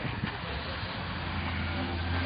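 A steady low mechanical hum, like an engine or motor running at an even speed, that grows slightly louder toward the end.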